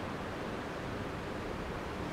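Steady, even background hiss of a room's ambient noise, with no distinct events.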